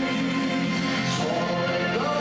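A man singing a Japanese song into a handheld microphone over a karaoke backing track.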